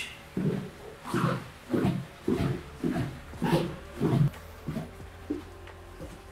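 Footsteps going down an indoor staircase: about ten dull thuds, roughly two a second, fading out near the end.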